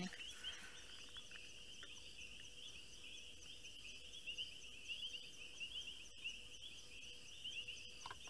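Faint night chorus of insects chirping in rapid, evenly repeated calls. A higher-pitched buzzing insect joins in on-and-off pulses about three seconds in, over a faint steady hum.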